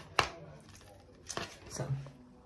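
Handling noise: a sharp click a moment in and a smaller one past a second, with light rustling between, then a voice says a single word near the end.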